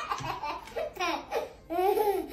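A toddler laughing in several short bursts, the loudest near the end.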